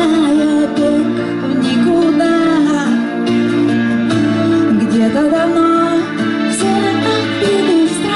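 Pop band playing a slow song live, a woman singing lead into a microphone over electric guitar, drums and keyboards.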